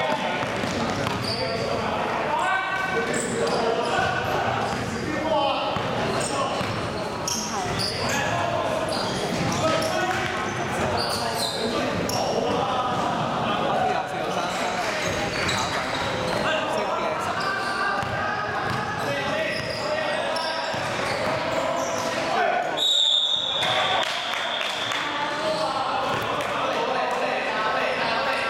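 Basketball game in a large echoing gym: the ball bouncing on the court, sneakers squeaking, and players calling out to each other throughout. Near the end a referee's whistle sounds for about a second and a half.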